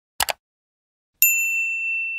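Notification-bell sound effect: a quick double click, then about a second later a single bright ding that rings on at one steady high pitch.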